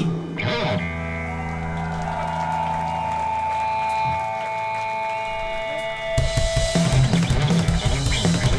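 Punk/Oi! band playing live through a club PA: the song breaks down to electric guitars ringing on long held notes, the low bass note dropping out about four seconds in, then the drums and full band crash back in about six seconds in.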